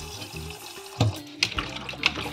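Water sloshing and splashing as raw chicken backs are rubbed and washed by hand in a plastic bowl of water in a stainless steel sink, with a couple of sharp knocks about a second in.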